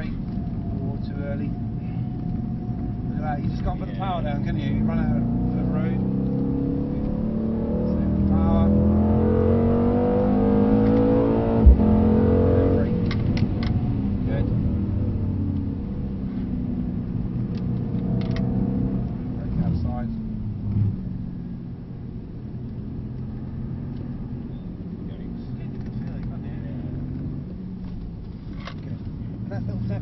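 Mercedes-AMG C63S's 4.0-litre twin-turbo V8 heard from inside the cabin under hard acceleration, rising steadily in pitch for several seconds, with a single sharp thump near the middle at the top of the rise. The pitch then falls away as the car slows, and it runs quieter for the last third.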